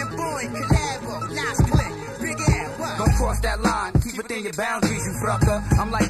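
Hip-hop music: a rapper's voice over a beat with heavy kick drums.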